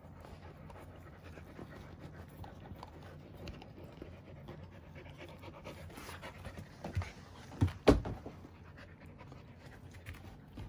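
Akita dogs panting while chewing and tearing a cardboard sheet, with scattered crackles from the cardboard. A few louder thumps come about seven to eight seconds in.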